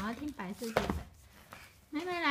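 A single sharp knock of a stiff board-book cover slapping down flat on a play mat, about three-quarters of a second in, after a brief bit of a small child's voice.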